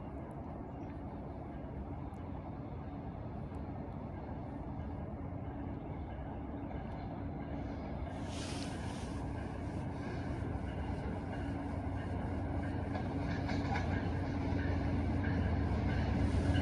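GE P42DC diesel locomotive approaching from a distance, its engine rumble and the train's running noise growing slowly and steadily louder. A brief hiss about halfway through.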